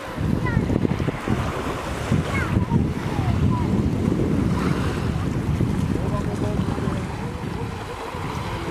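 Wind buffeting the microphone, a heavy low gusting rumble that comes up suddenly and stays strong, over the wash of small waves at the shoreline.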